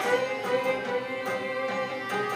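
Elementary-school children's chorus singing with instrumental accompaniment, holding one long note through most of the stretch.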